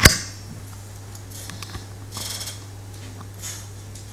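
A single sharp knock at the start, then a couple of fainter rustling, scraping handling noises, over a steady low electrical hum.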